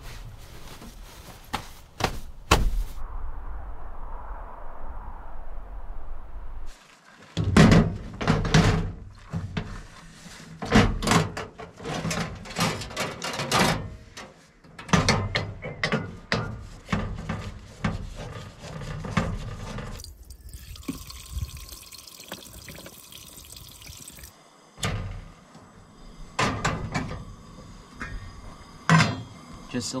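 Clatter and knocks of metal camp-cooking gear being handled and set out, with a steady hiss lasting about four seconds in the middle.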